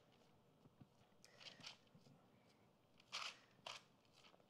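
Near silence with faint sounds of bare hands pressing a sticky ground-chicken and Parmesan crust mixture flat on a parchment-lined baking sheet: a few soft ticks, then two short soft rustles about three seconds in.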